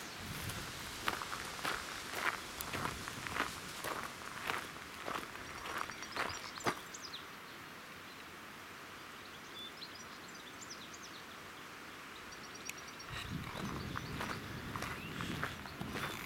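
Footsteps crunching on a gravel path at a steady walking pace, a little under two steps a second. They stop for several seconds after about seven seconds, when only a few faint high chirps are heard, then start again near the end.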